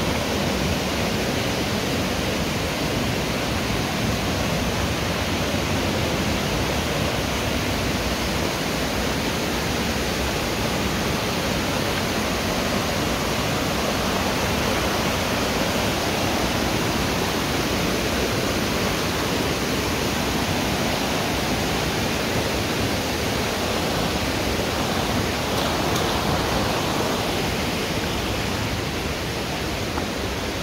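Steady rush of water from a small waterfall and a fast, shallow stream.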